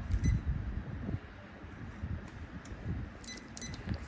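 Low, uneven handling rumble and bumps, with a few short, high-pitched metallic pings about a quarter second in and again a little before the end.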